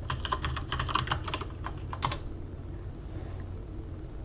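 Computer keyboard typing: a quick run of keystrokes for about two seconds, then it stops.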